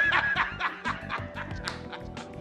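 A man laughing heartily, a rapid run of ha-ha-ha pulses, loudest at the start and tailing off, over background music.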